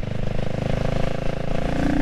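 The CCM Spitfire Six's 600cc single-cylinder engine running steadily while the bike cruises on the road, its note rising slightly near the end. Wind rushes over the helmet-mounted microphone.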